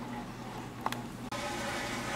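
Quiet room background with a steady low hum, broken by one faint click about a second in.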